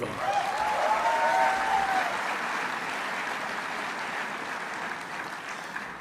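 Large audience in an auditorium applauding, the clapping slowly dying down.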